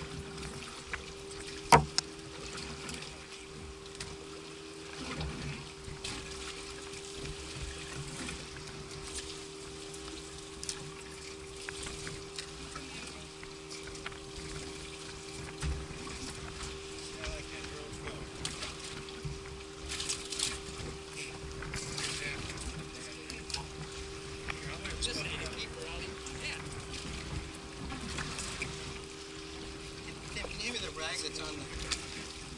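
Wind and water noise around a small fishing boat on open water, with a steady low hum throughout and one sharp knock about two seconds in.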